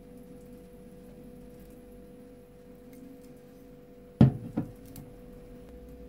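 A glass drink bottle and its metal twist-off cap being set down on a table: a sharp knock about four seconds in, a second smaller knock half a second later, then a couple of light clicks.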